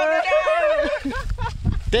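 A man's long held shout of joy followed by excited men's voices.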